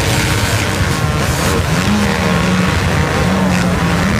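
Many motocross bike engines revving hard together under load as the pack climbs a sand dune, a loud, dense chorus of engines. About halfway through, one engine rises in pitch and holds there briefly.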